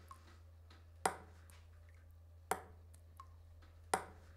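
Water dripping into a plastic cup: three sharp, ringing drops about a second and a half apart, over a steady low hum.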